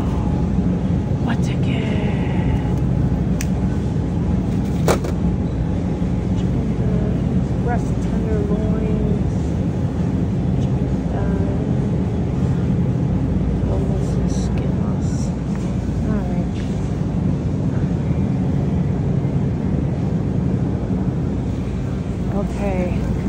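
Supermarket background sound: a steady low hum from the refrigerated meat display cases, with faint voices of other shoppers and a single sharp click about five seconds in.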